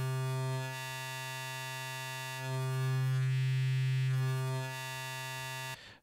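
Native Instruments Massive software synthesizer holding one low note on its Dirty Needle wavetable. The tone shifts as the wavetable position is swept: the note gets quieter about a second in, louder again around the middle, then quieter, and it cuts off just before the end.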